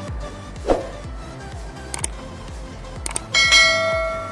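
Background music with a steady beat. Near the end come a couple of quick clicks and then a bell-like ding that rings on, the sound effect of a subscribe-button overlay.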